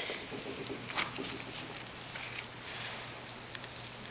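Faint, soft squishing and patting of gloved hands working cornstarch-and-water goo (oobleck) in a plastic bowl and scooping up a handful, with a few small clicks.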